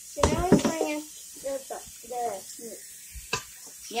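A person's voice talking over a faint steady hiss of running tap water in a stainless-steel sink, with one sharp knock about three seconds in.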